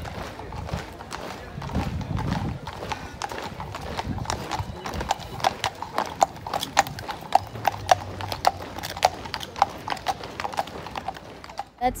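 Shod horse's hooves clip-clopping on the road, sharp ringing clicks at about two to three a second that grow louder about halfway through as the horse passes close by.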